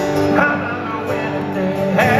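A live country band playing amplified music, with a melody line bending in pitch over the band.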